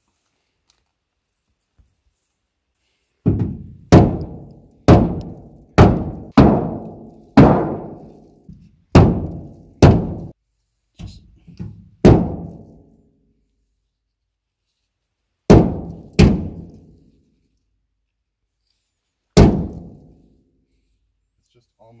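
A whole coconut bashed repeatedly against a junked car's metal door frame to crack its shell: about a dozen sharp knocks in quick succession, each with a short ringing decay, then two more after a pause and a last one near the end. The shell has not yet split.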